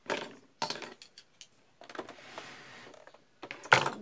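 Rustling as a pinned fabric zip panel is handled. Then a white plastic-bodied sewing machine slides across the tabletop for about a second and a half, and a single sharp knock comes near the end.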